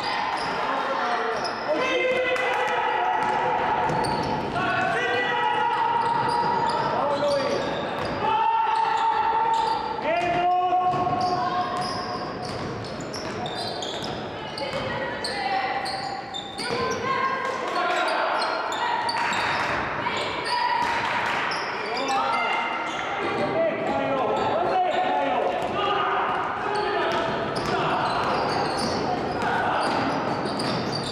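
Basketball game in a large, echoing sports hall: a basketball bouncing on the hardwood floor, over the voices of players and coaches calling out.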